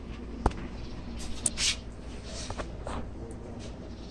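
Steady low background hum with a single sharp click about half a second in, and a few faint, brief rustles and scrapes.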